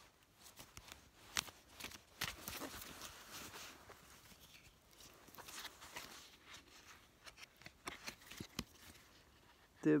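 A deck of astrology cards being handled and fanned out in the hands: faint rustling with scattered sharp clicks as the card edges slide and snap against each other.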